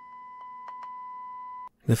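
A steady sine test tone received over FM and played through a small radio's speaker, getting louder in a few small steps, each marked by a faint tick, as the phase shift between the left and right test signals is brought back towards zero. It cuts off suddenly near the end.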